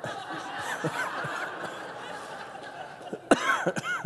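Congregation laughing and murmuring at a joke. Near the end come a few short, loud bursts of laughter from a man close to the microphone.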